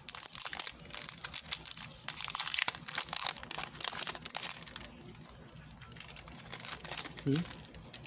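Foil wrapper of a Pokémon booster pack crinkling as it is handled and opened: a dense run of crackles that thins out about five seconds in.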